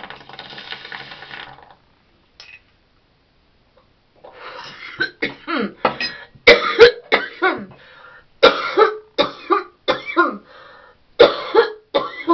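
A small glass water bong being lit and pulled through for about a second and a half, then a pause. From about four seconds in comes a long fit of harsh, repeated coughing brought on by the bong hit.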